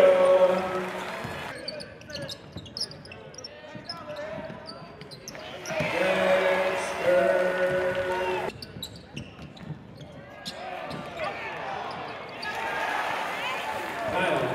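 Basketball bouncing on a hardwood court in a large gym, with voices calling out across the arena about the first second and a half and again from about six to eight seconds in.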